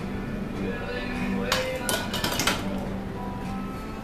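Loaded barbell with iron plates racked onto the bench's steel uprights: a burst of metallic clanks about halfway through, over steady background music.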